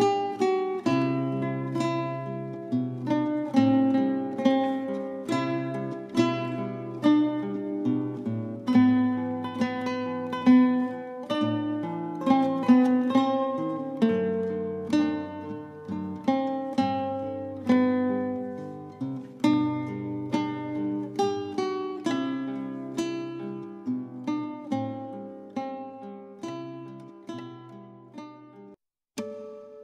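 Acoustic guitar music: plucked notes and picked chords at an even, unhurried pace, each note ringing and dying away over a held bass.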